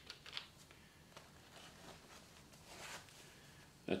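Faint handling noises: a few light clicks as a steel rule is picked up off a table, then a soft rustle about three seconds in as it slides down into a denim apron's chest pocket.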